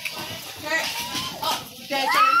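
Speech only: several people talking over one another, children's voices among them.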